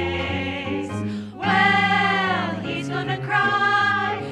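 A women's vocal group singing in harmony, mostly long held chords. The sound dips briefly about a second and a half in, then swells into a loud sustained chord, followed by shorter notes.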